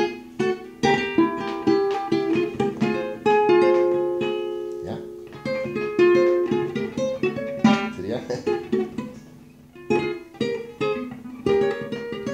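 Acoustic guitar playing a single-note picked melody, the middle passage of a polka introduction in F minor, with a few struck chords between the runs.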